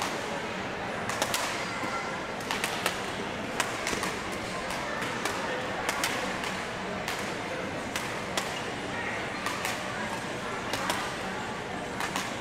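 Badminton rackets hitting a shuttlecock during a doubles rally: a series of short, sharp hits at irregular intervals, about one a second, over background chatter.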